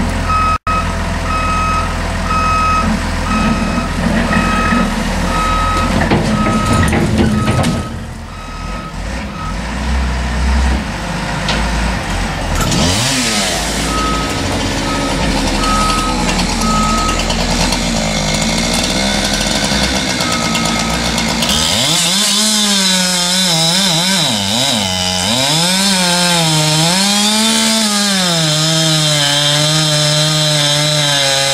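Caterpillar wheel loader's diesel engine running with its reversing beeper sounding over and over, and a louder burst of noise about seven seconds in. From about two-thirds of the way through, a chainsaw cuts into the felled trunk, its engine pitch rising and falling with the cut.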